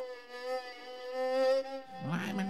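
A fiddle holding one buzzing note, swelling and fading in loudness, with a small step up in pitch about a second in, imitating the drone of a blowfly in flight.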